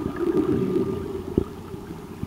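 Muffled underwater noise picked up by a submerged camera: a low, dull water wash with a few sharp clicks and knocks, one standing out about two-thirds of the way through.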